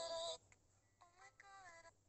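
A man's recorded speech played back through CapCut's Lo-Fi voice effect, sounding thin and muffled. It breaks off about a third of a second in, and a fainter stretch of the same processed voice follows about a second in.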